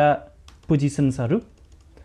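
A few light keystrokes on a computer keyboard while a man's voice, louder, talks over them.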